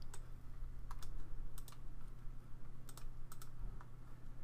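A handful of light, sharp clicks from computer input, some in quick pairs, scattered over a few seconds above a steady low electrical hum.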